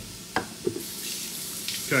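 A metal box grater knocks twice on a wooden cutting board as it is set down. About a second in, a steady hiss starts and carries on.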